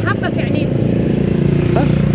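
A motor vehicle's engine running close by, a steady low hum that grows louder near the end, with a man's voice briefly over it at the start.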